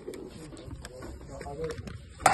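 Faint, indistinct voices over a steady low background hum, with a few light clicks.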